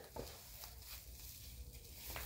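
Faint handling noise: soft rustles and a few light clicks of plastic packaging as a mini curling iron is taken out, over a low steady hum.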